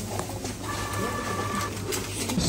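Shop till's receipt printer printing: a steady whine lasting about a second, over a low room hum.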